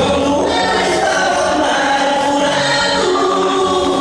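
A male vocal duo singing a gospel song through microphones over instrumental accompaniment, with held notes and a steady bass line underneath.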